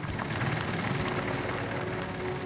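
A car engine running, with a steady rush of outdoor noise and a faint steady hum coming in about half a second in.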